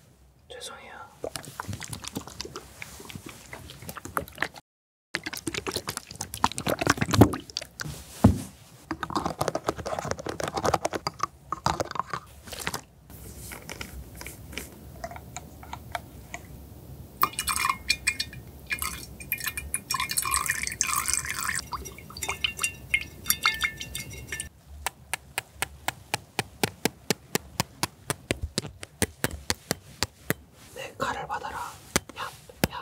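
Close-miked handling of green plastic cosmetic bottles: crackly taps and clicks on the plastic, then liquid poured from an opened bottle into a glass, with a pitched ringing gurgle in the middle. A fast run of sharp clicks comes near the end.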